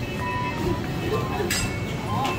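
Busy supermarket background noise: a steady low rumble with music and distant voices, and a sharp clatter about one and a half seconds in.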